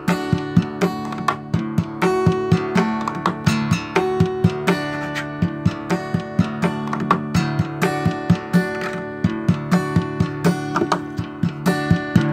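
Acoustic guitar played percussively: strummed chords ring on while sharp slaps of the hand against the strings and body mark a steady rhythm of about three hits a second.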